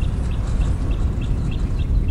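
Steady low rumble of a car driving along a street, with a run of short high chirps, about four a second, over it.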